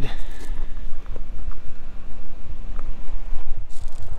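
Wind buffeting the microphone: an uneven low rumble, with a few faint ticks.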